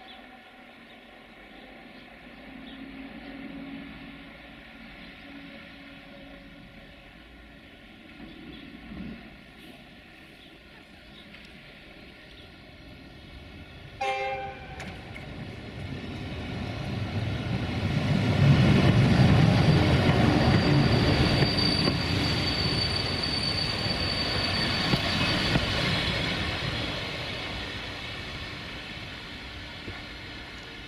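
040-EC electric locomotive hauling a passenger train: a short blast on its horn about halfway through, then the train's rumble grows loud as it passes close. A thin high squeal sounds for a few seconds during the pass, and the rumble fades as the coaches move away.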